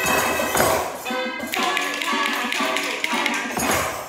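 Recorded music playing, with children tapping along on small hand drums; sharp taps land over the tune.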